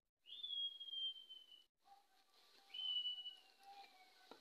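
Two long, faint whistled notes, the first a quarter second in and the second near three seconds in, each rising quickly then gliding slowly down in pitch, over a faint steady hum.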